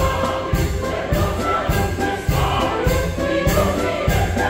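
Live southern Italian folk music: a chorus singing over violin, accordion and a tamburello frame drum, with a steady beat a little under two a second.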